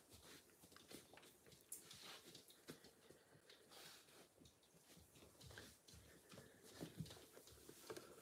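Near silence: faint, scattered soft footfalls and small taps and rustles in a quiet room, with the most distinct thud about seven seconds in.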